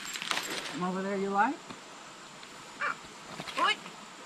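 A few footsteps crunching in dry leaf litter, then a held wordless voice sound that rises in pitch at its end, followed near the end by two short higher-pitched vocal sounds.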